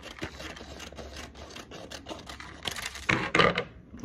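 Scissors cutting through a printed transfer sheet: small crisp snips and clicks, with the paper crinkling and rustling louder about three seconds in as the last edge comes off.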